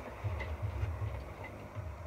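A few faint clicks of Christmas baubles being handled and knocking together, over a low rumble.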